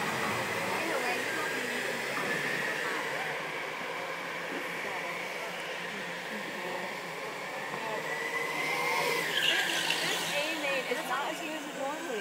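Go-karts running round an indoor track: a steady hum of kart motors with a thin whine that rises about nine seconds in.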